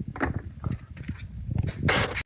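Several light knocks and clatters of a plastic shop vac lid and filter being handled, with a louder rustling scrape near the end.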